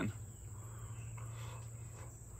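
Insects trilling outdoors in one steady high-pitched tone, over a low steady hum.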